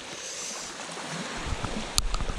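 Steady hiss of small waves lapping a sandy shore, with a low rumble building about halfway through and a sharp click at the very end.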